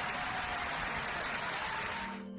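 A steady, even hiss of noise, like static, held at one level with most of its weight in the higher range.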